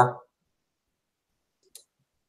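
The end of a spoken word, then silence broken by one faint, short computer click near the end, as the image display is toggled between before and after.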